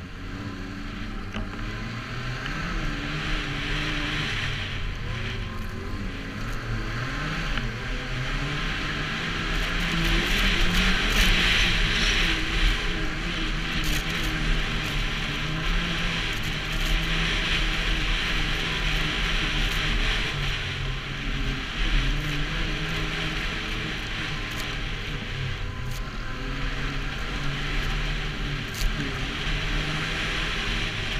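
Snowmobile engine running under way, its pitch rising and falling with the throttle, over a steady rush of wind and snow that swells for a few seconds about ten seconds in.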